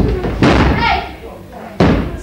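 Two heavy slams on a wrestling ring mat, about a second and a half apart, as a wrestler's body hits the canvas, with shouting voices around them.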